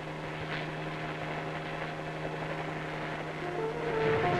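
Helicopter in flight: a steady, even drone on one low pitch.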